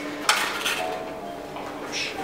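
Metal clanking and clinking of a bicycle being handled in a two-tier steel bicycle rack. There are several sharp clinks, the loudest about a quarter second in and another near the end.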